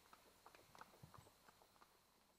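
Faint clip-clop of a Hanoverian horse's hooves trotting on asphalt, a quick irregular run of hoofbeats.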